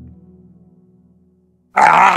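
Electric guitar notes played through the Axiom amp-simulator plugin ringing out and fading away to silence. Near the end, a man gives a sudden loud yell.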